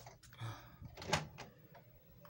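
A few sharp plastic clicks and knocks, the loudest about a second in, from handling the front of a TV/VCR/DVD combo while trying to load a movie.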